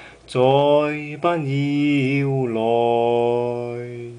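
A man sings a slow pop ballad unaccompanied. Two short sung phrases give way, about two and a half seconds in, to one long held note that slowly fades.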